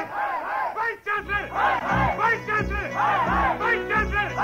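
A chorus of voices shouting or chanting in rhythm over a music track. A heavy drum beat comes in about a second in, after a brief dip.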